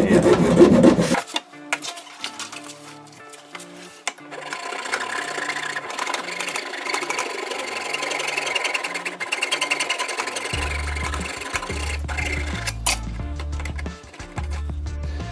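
Hacksaw cutting through a plastic sink waste-trap spigot, loudest in about the first second. Background music with a bass line then comes in, with the rapid rasping saw strokes going on under it.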